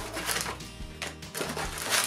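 Booster box packaging being handled and opened: a run of irregular crackles, rustles and clicks of cardboard and plastic wrap.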